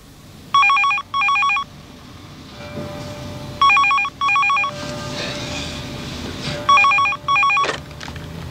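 A desk telephone ringing with an incoming call: three double rings about three seconds apart, each a pair of short trilling bursts.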